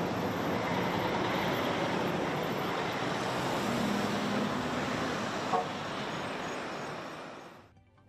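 Road traffic noise from lorries and cars moving along a highway, a steady rush of engines and tyres with a brief low tone about halfway through. It fades out just before the end.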